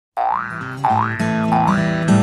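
Intro jingle: a springy 'boing' sound effect rising in pitch three times, about every two-thirds of a second, over short musical notes.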